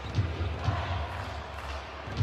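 Basketball dribbled on a hardwood court: a few low bounces, roughly two a second, over steady arena background noise.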